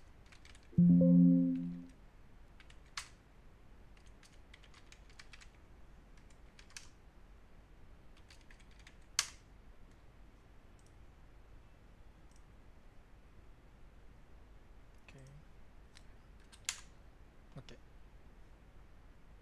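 Computer keyboard keys clicking sporadically as commands are typed, with a few louder single key strikes. About a second in, a loud low tone made of a few steady pitches sounds for about a second and fades out.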